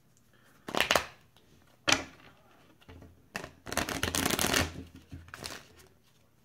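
A deck of playing cards being shuffled and handled by hand: short bursts of card noise about one and two seconds in, a longer run of rustling shuffling from about three and a half seconds, and one more short burst near the end.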